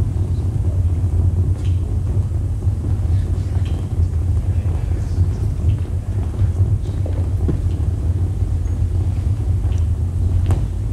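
Eurorack modular synthesizer putting out a deep, rumbling low drone with a noisy texture, with a few faint clicks scattered over it.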